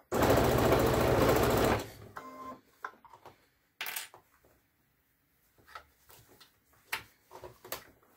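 Baby Lock Soprano computerized sewing machine stitching through denim in one fast, even run of needle strokes lasting about two seconds, then stopping. A few faint clicks follow as the fabric is handled.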